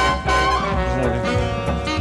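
Background music: swing-style jazz led by brass horns, playing held notes.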